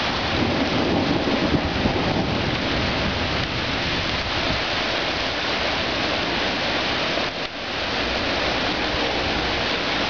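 Heavy rain pouring down steadily as a sudden downpour arrives, a dense, loud hiss of rain on the street, lawns and parked cars.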